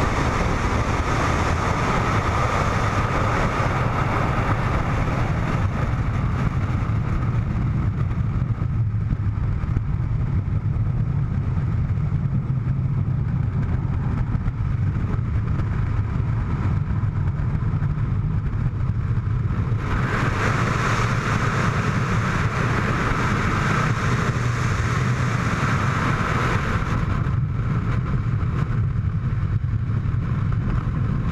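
Steady, loud rush of freefall wind buffeting a camera's microphone during a tandem skydive, getting brighter and hissier a little past the middle.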